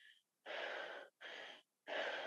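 A woman breathing hard in quick, noisy breaths, about three in the space of a second and a half, starting about half a second in.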